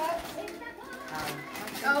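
Indistinct voices talking in the background, a mix of chatter with no clear words.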